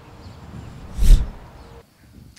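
A single short, loud puff of breath into a handheld microphone about a second in, heavy in low rumble.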